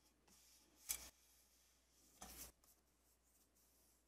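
Mostly near silence, broken twice by faint, brief rustles of cardstock being handled, about one second and about two seconds in, as a freshly glued panel is pressed down onto the card base.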